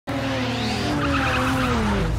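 Car engine and tyre squeal in a film's action sound mix, a pitched note sliding slowly down in pitch across the two seconds.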